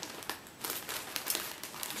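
Clear plastic bag of mini yarn skeins crinkling as it is handled, a run of small irregular crackles starting about half a second in.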